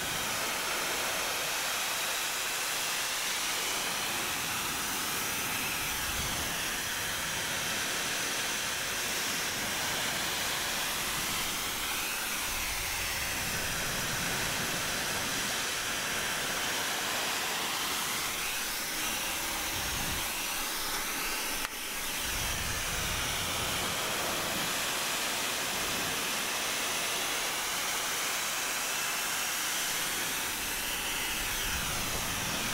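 Handheld hair dryer blowing a steady rush of air onto wet hair, its hiss slowly swelling and fading in tone as the dryer is moved about. There is a brief dip with a click about two-thirds of the way through.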